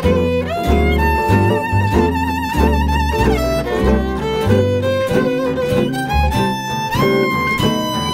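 Gypsy jazz ensemble playing: a violin carries the melody in long held notes with wide vibrato, over a steady guitar rhythm and double bass.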